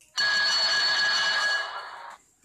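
Electric school bell ringing steadily for about two seconds, then cutting off sharply.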